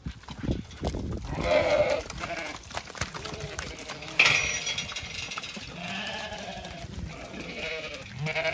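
Zwartbles ewes bleating as the flock moves, with several long calls about a second or two in and again around six seconds.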